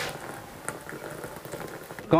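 A steady, faint hiss of background noise with a single light click about two-thirds of a second in.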